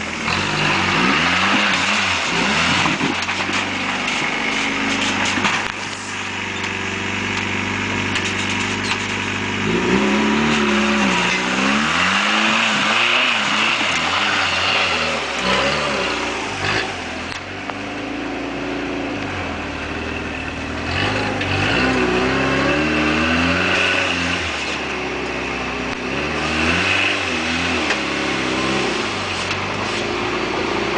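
Rock crawler buggy's engine revving up and down in repeated bursts under load as it climbs a steep rock ledge, running steadily between the blips.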